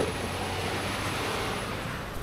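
Semi-trailer truck hauling a shipping container passing close by on the highway: steady engine and tyre noise.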